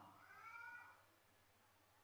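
Near silence, broken in the first second by one faint, short, high-pitched call whose pitch arches up and down.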